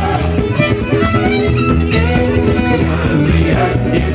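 Live acoustic string band playing an instrumental passage with no vocals: a fiddle carries the melody over strummed ukulele and upright bass.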